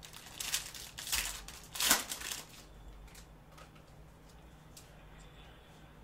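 Foil wrapper of a 2021 Panini Prizm UFC hobby pack being torn open and crinkled, with a few sharp crackling rips in the first two and a half seconds, the loudest about two seconds in. Then faint light clicks as the cards are slid out and handled.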